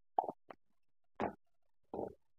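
Silicone spatula stirring potatoes and peas in a metal pressure cooker: four short scrapes and knocks of the spatula and food against the pot in two seconds.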